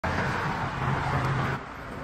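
Steady highway traffic noise, which drops abruptly to a quieter level about one and a half seconds in.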